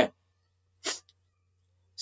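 A pause in a man's narration: the end of a spoken word right at the start, then about a second in one short breathy sound, a quick breath or sniff, over a faint steady low hum.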